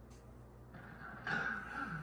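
Sony Bravia KDL-40S4100 television's speakers cutting in with the film's soundtrack about three quarters of a second in, after a delay in the sound; faint and low in level.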